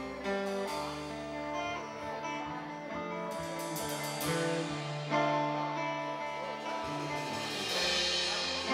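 Live rock band playing an instrumental passage without vocals: electric guitars playing sustained, shifting notes over bass guitar and drum kit, with a cymbal crash near the end.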